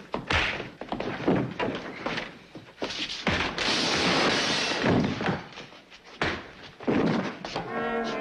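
Fight-scene sound effects: a rapid series of thuds and blows, with a longer crashing rush of noise about halfway through. Brass-led orchestral music plays underneath.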